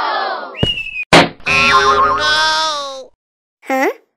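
Cartoon sound effects: a sharp hit about a second in, then a long wavering tone, and a short swooping sound near the end.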